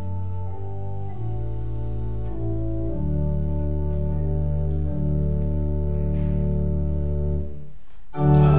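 Organ playing the introduction to a sung psalm: held chords over a sustained bass that change every second or so, breaking off briefly near the end before the singing begins.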